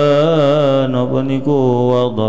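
A man chanting the recitation of a hadith text into a microphone: one long drawn-out note whose pitch wavers, then a short break and a new intoned phrase starting near the end.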